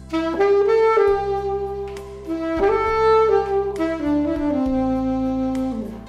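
Alto saxophone playing a slow melody over a backing track: two phrases, the second stepping down to a long low held note that falls away near the end.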